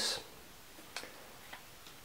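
Three faint, sharp clicks about a second apart or less, from the wooden stereoscope being handled and turned in the hand.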